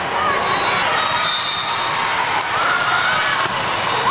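Busy hall din from a volleyball tournament: many overlapping voices, with the sharp knocks of volleyballs being hit and bouncing on surrounding courts. Short high squeals and a brief high tone rise above it.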